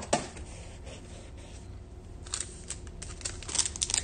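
Foil wrapper of a Panini Prizm basketball card pack crinkling as it is handled, with a cluster of sharp crackles near the end as the pack is peeled open.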